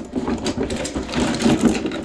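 Hand tools in a bucket clattering and clinking against each other as gloved hands rummage through them: a quick, uneven run of small clicks and rattles.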